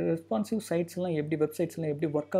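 Only speech: a person speaking Tamil, over a faint steady low hum.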